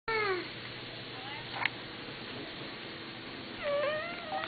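A toddler's high-pitched squeal, falling in pitch, right at the start, and another short squeal near the end, with a brief click about a second and a half in.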